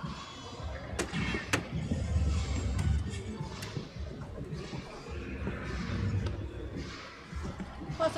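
Two soft-tip darts hitting an electronic dartboard, two sharp clicks about half a second apart about a second in. Background music and the low rumble of a large hall run underneath.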